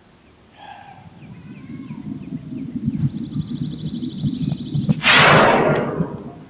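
A short burst of aerosol spray hiss, spray-on sunscreen, about five seconds in: the loudest sound, starting suddenly and fading over about a second. Before it, a low rustling rumble builds up.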